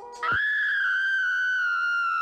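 A single loud, high-pitched tone comes in about a quarter second in, just as the music cuts off, and is held steadily, sagging slightly in pitch.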